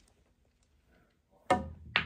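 Near silence, then about a second and a half in a sharp click as the pool cue's tip strikes the cue ball. A second sharp clack follows about half a second later as the ball hits another ball on the table.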